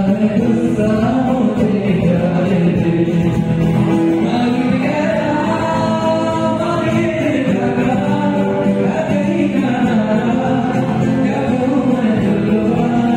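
Live band playing a Bollywood song mashup: male vocals sung into handheld microphones over electric and acoustic guitars and keyboard, amplified through the PA. The singing runs in long held notes.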